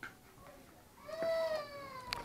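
A single high-pitched drawn-out call starting about a second in, rising briefly and then sliding down in pitch.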